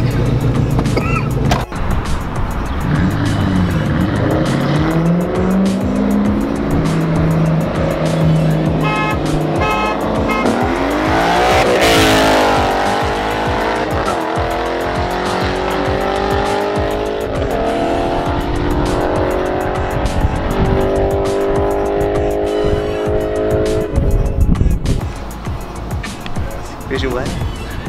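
Ford Mustangs accelerating hard down a street, their engine notes climbing in pitch through the gears. A loud pass-by about twelve seconds in drops in pitch, then the engines climb again as the cars pull away.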